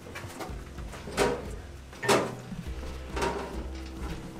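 Footsteps going down a steep metal ship's ladder: three thuds on the treads about a second apart, over a steady low hum.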